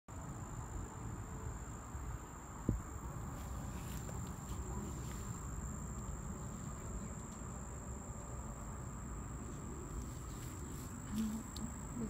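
Crickets singing one steady, high-pitched trill over a low rumble, with a single sharp click about three seconds in.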